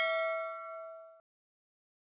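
Notification-bell ding sound effect from a subscribe-button animation. Several bright ringing tones fade and then cut off abruptly a little over a second in.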